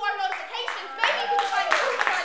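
A spoken voice trailing off, then audience clapping that breaks out about a second in and grows, with voices over it.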